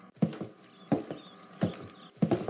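Footsteps: three heavy steps spaced a little under a second apart, as a character runs off.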